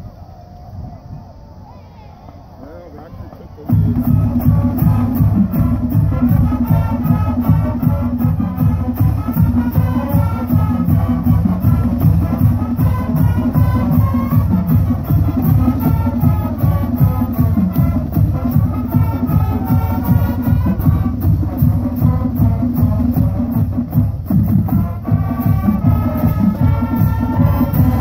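High school marching band playing its school fight song: brass melody over a drumline, coming in loud and all at once about four seconds in after a few seconds of crowd voices.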